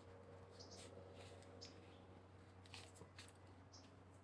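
Near silence with faint small clicks and rubs of a digital audio player being handled and pressed into its fitted protective case, over a low steady hum.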